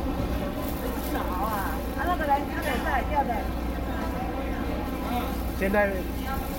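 Indistinct chatter of people talking across a busy fish-market floor, over a steady low rumble. The voices are clearest between about one and three and a half seconds in, and a nearer voice starts just before the end.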